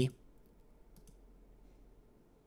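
Faint computer mouse clicks over quiet room tone, the clearest one about halfway through.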